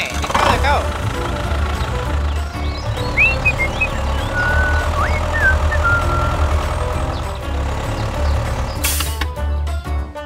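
Tractor engine running steadily under background music. There is a sweeping glide at the very start and a few short squeaky chirps in the middle.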